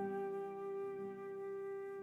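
Slow, calm instrumental meditation music: a flute holds one long, steady note over a soft low accompaniment.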